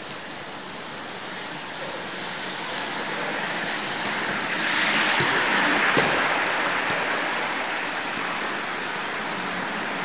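A steady rushing noise that swells about halfway through, with two sharp knocks about five and six seconds in: a futsal ball being kicked on artificial turf.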